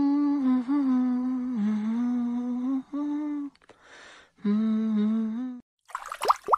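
A person humming two long held notes with a short breath drawn between them, the second note lower than the first.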